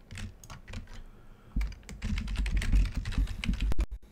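Typing on a computer keyboard: a quick, uneven run of key clicks, with heavier low thuds on the desk in the second half.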